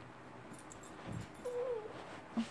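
A chihuahua gives one short whine, rising then falling, about one and a half seconds in, just after a soft thump.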